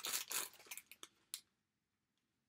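Wrapping crinkling and rustling as an enamel pin on its backing card is unwrapped by hand, ending with one sharp click about a second and a half in.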